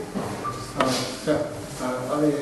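Quiet talking in a room, with a single sharp click or knock a little under a second in.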